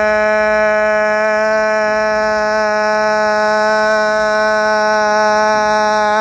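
A man's voice holding one long, loud note at a steady pitch: the drawn-out vowel of a shouted "Ivan", sustained as long as his breath lasts.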